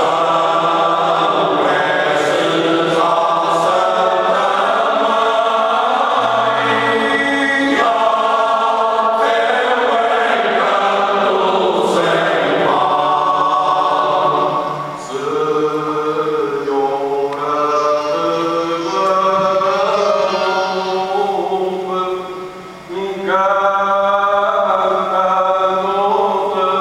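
Male choir singing cante alentejano, the unaccompanied part-singing of Portugal's Alentejo, in long held phrases. The singing dips briefly between phrases twice, about halfway and again a few seconds before the end.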